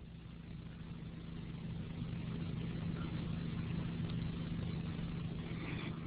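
Steady low hum with a faint hiss, growing a little louder over the first couple of seconds and then holding steady.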